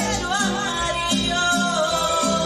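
A woman singing a Latin song into a microphone over recorded backing music, with a bass line that repeats about twice a second.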